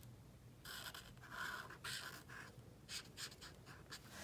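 Felt-tip marker rubbing on coloring-book paper: a quiet run of short back-and-forth coloring strokes, starting a little over half a second in.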